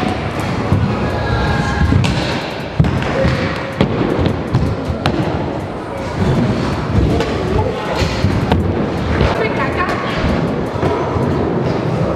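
Stunt scooter riding and landing on skatepark ramps: several sharp thuds and clatters, over background music and voices.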